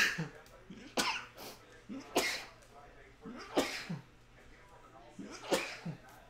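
A man sneezing over and over, about five sudden sneezes one to two seconds apart.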